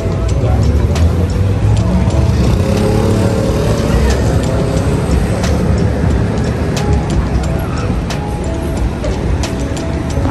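City street traffic: cars passing with a steady low rumble, with music playing over it.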